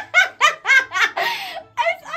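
A person laughing hard: a quick run of laughs, about four a second, with a breathy stretch in the middle before a few more.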